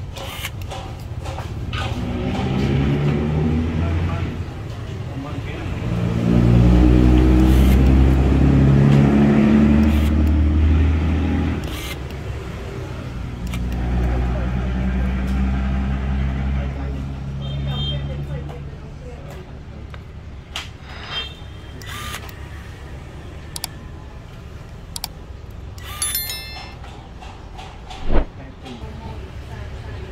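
A low engine hum that swells about six seconds in, eases, swells again and fades away after about eighteen seconds, followed by scattered light clicks and taps.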